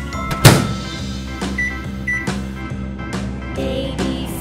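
The door of a toy play-kitchen microwave shut with a single sharp knock about half a second in, over background music.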